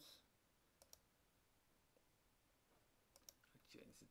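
Near silence with a few faint clicks of a computer mouse: two just before a second in and a couple more around three seconds in.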